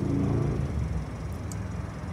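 Low, steady motor-vehicle engine rumble that eases off slightly, with a faint tick about a second and a half in.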